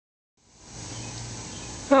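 Steady low hum with a faint hiss above it, fading in about half a second in; a man's voice says "Oh" at the very end.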